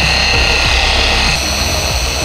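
Rupes electric car polisher running steadily against a car's rear window, buffing polishing compound into the smeared glass: a steady motor whine over a low hum.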